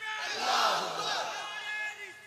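Crowd of many voices shouting together in a raised chant, the voices overlapping and rising and falling in pitch.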